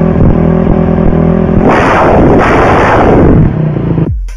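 Motorcycle engine running at high revs with a steady tone, giving way about two seconds in to a louder rush of noise that fades near the end.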